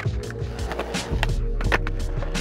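Skateboard wheels rolling on a concrete skatepark with a low rumble, and several sharp clacks of the board against the concrete, under background music.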